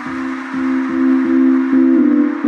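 Complextro electronic music: a synth hits a short pitched chord again and again, about two and a half times a second, getting louder about half a second in, while a high hissing layer fades away.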